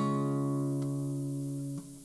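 An acoustic guitar chord rings on, fading slowly, and is damped shortly before the end.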